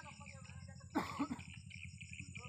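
A person coughing close to the microphone about a second in: one loud hack, followed by a shorter second one.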